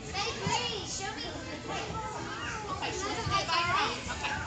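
Young children playing and calling out, with adult and child voices talking over one another.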